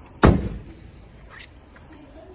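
The rear passenger door of a 2015 Peugeot 208 five-door hatchback being shut: one solid slam about a quarter second in, dying away quickly, followed by a couple of faint light knocks.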